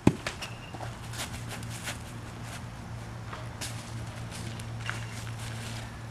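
A sharp thump at the start, then scattered crunches and rustles of footsteps and movement on dry leaf litter, over a steady low hum.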